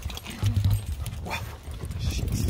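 A Labrador panting as it trots alongside a moving bicycle, over an uneven low rumble.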